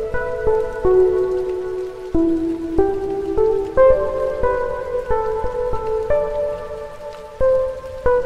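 Gentle instrumental background music: a slow melody of single sustained notes, one after another, over a soft steady hiss.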